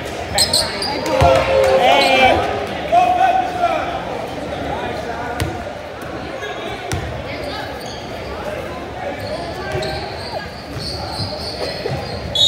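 Basketball bouncing on a hardwood gym floor during a game, a few separate thumps among indistinct voices, in a large echoing gym.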